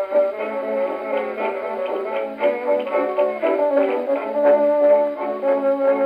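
Dance-orchestra 78 rpm record playing on an HMV 157 acoustic cabinet gramophone: an instrumental passage with brass carrying the tune. The sound is thin, with no deep bass and no top.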